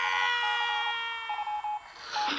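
Cartoon sound effect: a long held tone of several pitches together, drifting slowly down in pitch and fading away, with short repeated beeps over it.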